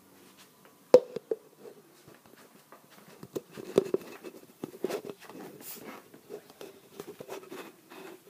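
Handling noise from a plastic cup and handheld phone being carried: one sharp click about a second in, then irregular small clicks and rustling.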